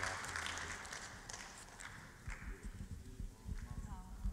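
Handling noise from a handheld microphone: scattered soft knocks, clicks and rubs as it is held and passed from hand to hand, with faint low voices.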